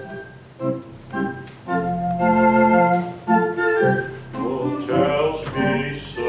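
Organ playing sustained chords that change every second or so, with a quicker run of rising notes near the end.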